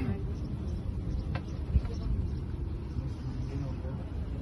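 A small boat's engine running with a steady low drone while the boat moves over the water. A single knock comes a little under two seconds in.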